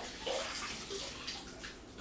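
Water sloshing and dripping from a wet sanding sponge handled over a bucket of warm water.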